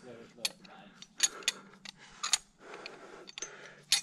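Steel anchor chain, ring and carabiners clinking against each other and the rock as the climbing rope is handled at the top anchor: a string of short, sharp metallic clinks, one near the end.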